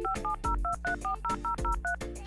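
Telephone keypad touch-tones: about ten quick two-note beeps, roughly five a second, as a number is dialled, over background music with a steady beat.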